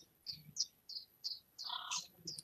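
Bird calls from a nature video's soundtrack, played back over a computer: about five short high chirps in quick succession, then a longer, fuller call near the end.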